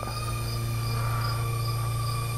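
Steady whine of a Cheerson CX-OF mini quadcopter's motors as it climbs, with a faint high chirp repeating about twice a second.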